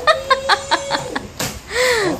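A woman laughing: a quick run of short laughs, about six or seven a second, for just over a second, then one drawn-out rising-and-falling laugh near the end.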